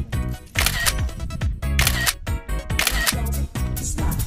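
Background music with a heavy, steady beat, marked by three short hissing bursts about a second apart.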